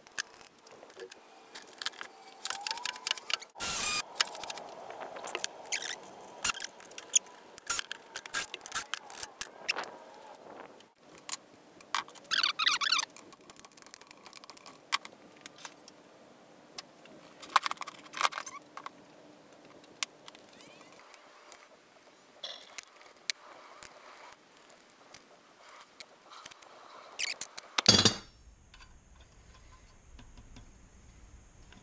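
Irregular metallic clinks, clicks and clatter of hand tools and loose engine parts as a Briggs & Stratton horizontal-shaft engine is taken apart for a valve job, with a louder clatter of knocks near the end.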